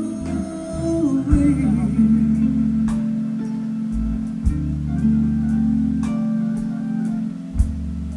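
Live blues band playing a slow passage: sustained bass and keyboard tones with a few drum hits and electric guitar, and a woman's sung line in the first couple of seconds.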